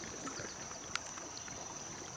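Shallow stream water flowing and lapping over pebbles, with a steady thin high-pitched whine over it and a single sharp click about a second in.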